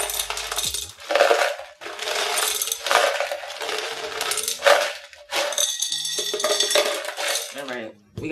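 Hard mineral potting granules (PON) pouring from a plastic cup into a clear container, the small stones rattling and clinking as they tumble in, in several pours with short pauses between.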